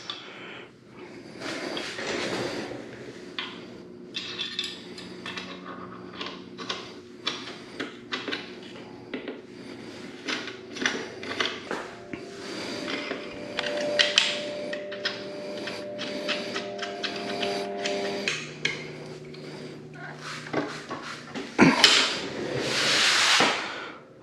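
Allen key and bolts working a metal footpeg extender bracket: a run of small metallic clicks, clinks and knocks as bolts are turned and the parts are handled, with a louder rustle near the end.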